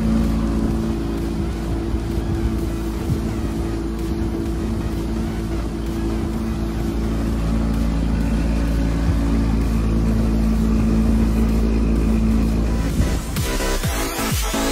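Boat's outboard motor running steadily at a constant speed. Electronic music comes in near the end.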